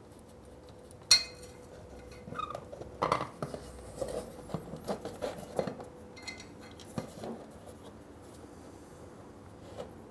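Small metallic clicks and clinks as the gearbox drain plug on a Moto Guzzi Breva 750 is unscrewed by hand and pulled out, with a sharp click about a second in, while the warmed gear oil starts to drain.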